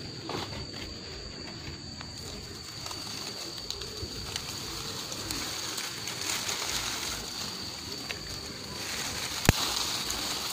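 Lychee leaves and twigs rustling as a hand works through the branches, with one sharp click near the end. A dove coos in the background over a steady high-pitched hum.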